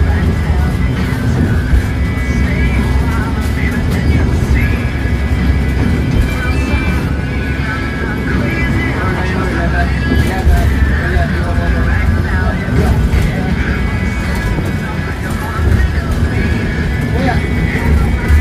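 Steady low engine and road rumble inside a moving bus's cabin, with music and a singing voice playing over it.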